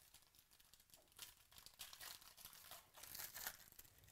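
Foil trading-card pack being torn open and crinkled by hand: a faint run of crackling tears starting about a second in, loudest near the end.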